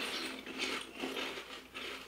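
Crunchy pork rinds being chewed, a run of crisp crunches about two or three a second.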